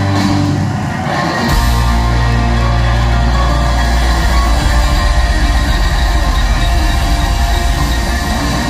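A live rock band with electric guitars, bass and drums playing loudly through a large PA. A heavier, deeper low end comes in about a second and a half in.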